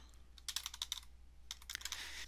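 Faint computer keyboard typing: two quick runs of keystrokes with a short pause between, as a search word is typed in.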